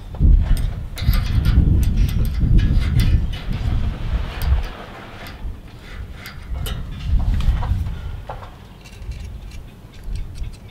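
Uneven low rumble, loudest in the first half and again about seven seconds in, with scattered light clicks and taps from steel rudder parts being handled.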